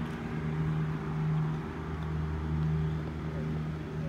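A steady, low machine hum with a pitched drone that swells and eases slightly, from a motor or engine running without letup.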